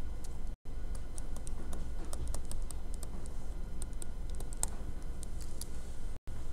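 Stylus tapping and clicking on a tablet screen while a word is handwritten and underlined: a quick irregular run of light, sharp clicks over a steady low room hum. The sound drops out completely for an instant about half a second in.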